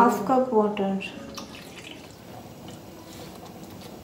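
A voice briefly at the start, then soft drips and plops from a pan of masala gravy as more is spooned into it from a cup.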